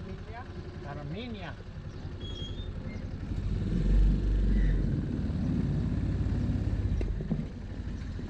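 Motorcycle tricycle engine idling with a fast, even pulse, then revving up about three and a half seconds in as the vehicle pulls away.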